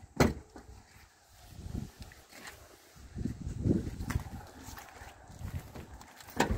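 A sharp click just after the start, then irregular footsteps, thumps and handling noises of someone moving about a car, with a few smaller clicks.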